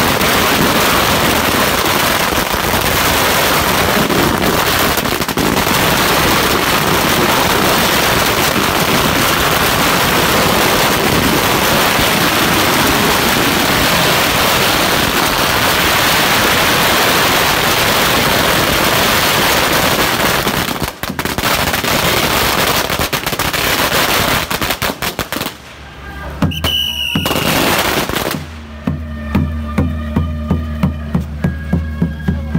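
Strings of firecrackers going off in one long, dense, rapid crackle around a deity's sedan chair in the Beigang firecracker bombardment. Near the end the barrage thins and stops, and music with a steady beat comes in.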